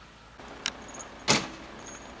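A sharp click, then a single loud knock a little over a second in, with faint rattling after it.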